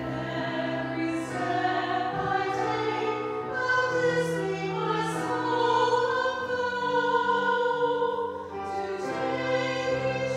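A hymn being sung, with long held notes that change pitch in steps.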